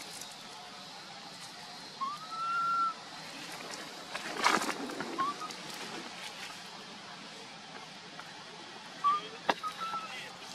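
Infant long-tailed macaque calling. About two seconds in it gives a clear coo just under a second long that rises and then holds, and a few short chirps at the same pitch follow later. Around the middle there is a brief scuffling noise, the loudest sound.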